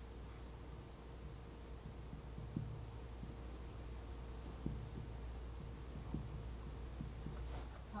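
Dry-erase marker writing on a whiteboard: faint scratchy squeaks of the felt tip, with a few light taps as letters are started, over a steady low room hum.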